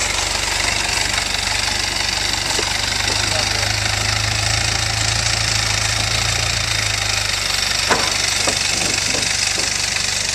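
Engine of a loaded overland 4x4 running low and steady as the vehicle creeps over a wooden plank bridge. The rumble grows a little stronger about four seconds in and eases back near seven seconds. A few short knocks come late on.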